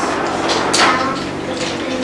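A marker pen drawn across a whiteboard, with a short squeak about three quarters of a second in, over steady room hum.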